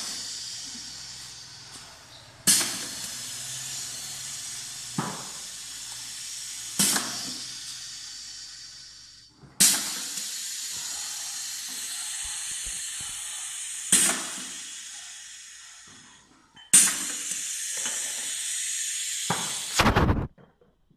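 Single-head pneumatic piston paste filler cycling as it doses peanut butter into jars: each stroke gives a sharp clack and a burst of compressed-air hiss that tails off, every two to four seconds, over a steady air hiss.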